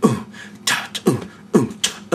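Old-school vocal beatbox: a man imitating a drum kit with his mouth, low falling 'boom' kick-drum sounds alternating with sharp 'chop' snare hits in a basic kick-and-snare beat.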